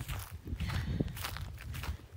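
Footsteps on dry straw-strewn dirt, a series of irregular steps with rustling.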